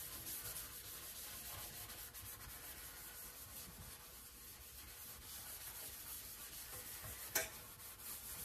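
Hand scrubbing a soapy stainless steel sink basin: a continuous rasping rub of many quick strokes, with one sharp knock near the end.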